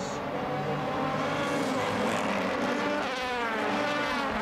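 Several DTM touring cars' V8 racing engines running hard, their overlapping engine notes sliding up and down in pitch as the cars accelerate and pass, one of them pulling out of the pit lane.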